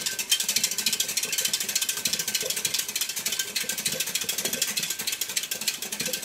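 Wire whisk stirring liquid in a large glass jar, its wires clicking against the glass in a rapid, steady run.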